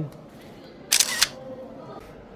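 A photo kiosk's countdown ends on its last count, then about a second in comes a short two-part camera-shutter sound as the kiosk takes the picture.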